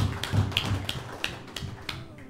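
Regular taps, about three a second, each with a dull low thump, growing a little fainter toward the end.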